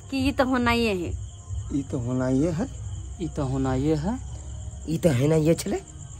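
A voice draws out four long wavering phrases, each rising and falling in pitch, without clear words. A steady high chirring of crickets runs underneath throughout.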